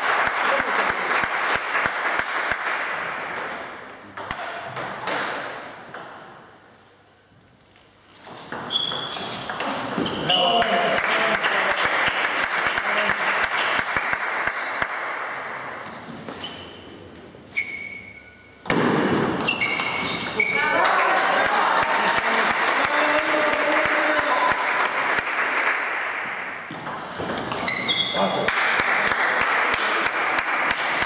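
Table tennis ball clicking off rackets and bouncing on the table during doubles rallies, amid voices in a large hall.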